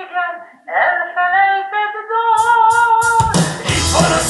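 A song with a voice singing long held notes alone, then a full rock band with drums and cymbals coming in suddenly about three seconds in.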